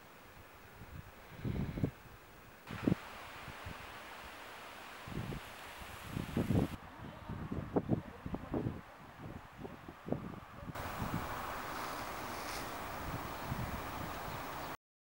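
Outdoor ambience with wind gusting on the microphone in irregular low thumps over a steady hiss. The background noise changes abruptly three times as the shots change.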